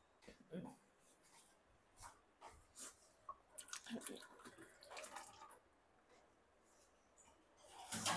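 Near silence, with faint scattered light clicks and taps from kitchen work at the counter.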